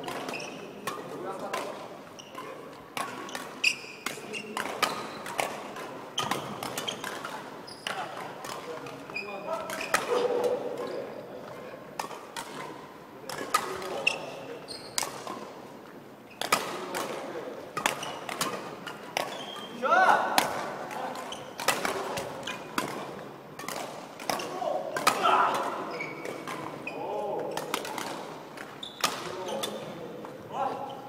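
Badminton rackets striking shuttlecocks in a rapid feeding drill: a run of sharp smacks, irregular, about one to two a second, ringing in a large hall. Short squeaks of shoes on the wooden court floor come between the hits.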